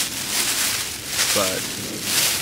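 Thin Mylar emergency blanket crinkling and rustling in repeated surges as it is pulled and tucked around a person's body.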